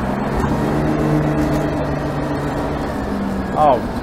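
Detroit Diesel 6V92 two-stroke V6 diesel in a 1955 Crown Firecoach fire engine, running steadily as the rig drives along, with road and wind noise in the open cab.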